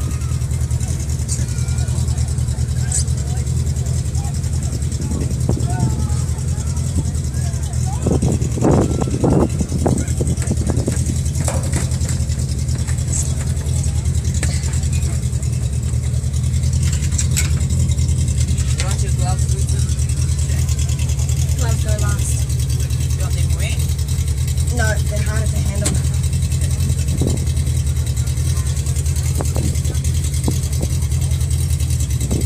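A vehicle engine idling steadily, a low even hum, with faint voices in the background and a brief louder rumble about eight seconds in.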